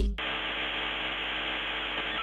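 Steady electronic static hiss with a low hum underneath, starting suddenly as the voice cuts off.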